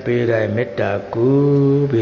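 A Buddhist monk's voice chanting in a steady intoning tone, one long held note following shorter ones.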